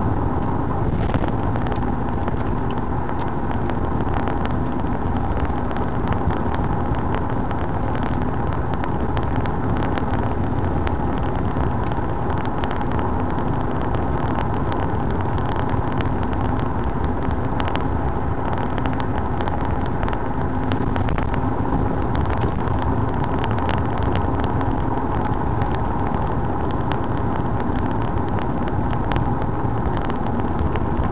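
Car cruising steadily at about 70 km/h with the engine near 2,000 rpm: even engine and tyre noise heard from inside the cabin, with frequent small ticks and rattles.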